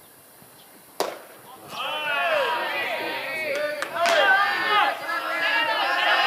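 A pitched baseball meets the catcher's mitt in a single sharp pop about a second in. From about two seconds on, several players' voices shout and call out loudly over one another, with a second sharp crack near four seconds.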